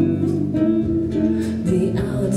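A live band playing a song, led by acoustic guitar and a woman's singing voice, with low bass notes underneath.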